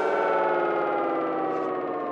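Intro music sting: a held electronic tone with many overtones, gliding slowly down in pitch and fading.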